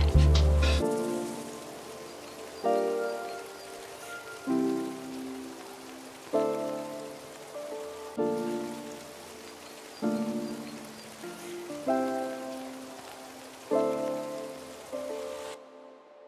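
Lofi hip hop track in a sparse passage. The drums drop out about a second in, leaving soft keyboard chords struck about every two seconds over a steady rain-like hiss. Everything cuts off suddenly just before the end, as the track finishes.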